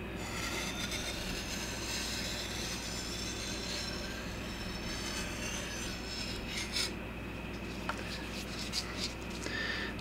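Steel sword blade being stroked along a wet 1000-grit sharpening stone: a steady scraping rasp of steel on stone that thins out in the second half, with a few light clicks.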